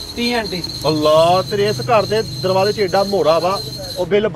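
Crickets chirping in a steady, high, unbroken trill under men's voices talking. The trill cuts off suddenly at the very end.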